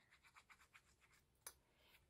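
Near silence, with faint rapid scratching from the fine metal tip of a glue bottle dragged along a paper cut-out, and one small click about one and a half seconds in.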